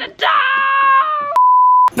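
A woman's drawn-out strained vocal sound through gritted teeth, followed a little over a second in by a steady high-pitched censor bleep lasting about half a second that starts and stops abruptly.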